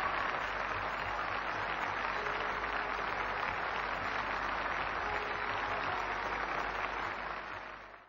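Large audience applauding steadily at the end of a song, fading out near the end.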